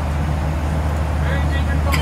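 Steady low drone inside the cabin of a Southwest Airlines Boeing 737, with faint passenger voices a little past the middle.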